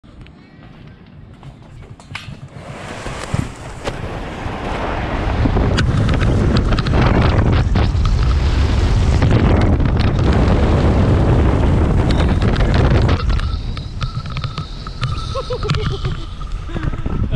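Wind rushing over a GoPro's microphone and an inflatable tube sliding fast down the plastic matting of a ski jump, with rattling knocks. It builds from about two seconds in to a loud steady rush, then eases near the end as the ride slows.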